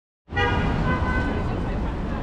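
City street traffic with a steady low rumble, and a short car-horn toot in the first second.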